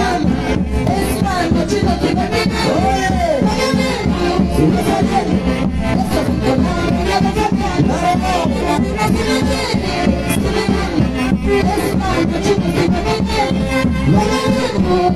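Live Peruvian dance orquesta with saxophones playing a lively tune over a steady beat, at full volume.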